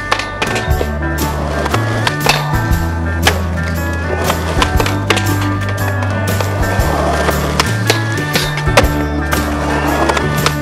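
Music with a steady, shifting bass line plays over skateboard sounds: a board knocking sharply several times and wheels rolling on pavement.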